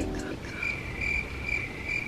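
A high-pitched, cricket-like chirping trill that starts about half a second in and pulses steadily about three times a second.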